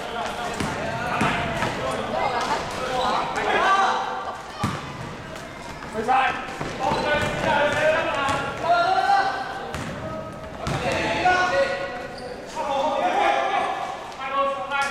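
A basketball being dribbled and bouncing on an indoor gym court, with players' voices calling out, echoing in a large hall.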